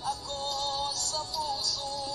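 A Tagalog love song: a sung melody of long held notes over instrumental backing, with a new phrase starting at the outset and a short slide in pitch near the end.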